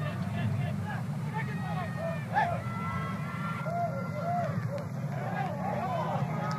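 Field-level sound of a soccer match: players shouting and calling to each other across the pitch over a steady low crowd and stadium rumble, with one drawn-out shout about halfway through.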